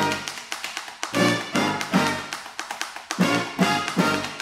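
Brass band playing an instrumental funk groove: horn chords recurring about once a second over marching bass drum and snare strokes.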